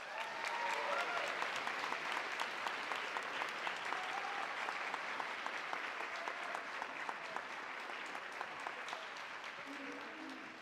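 Audience applauding, a dense wash of clapping with a few shouts in the first second or two, tapering off near the end.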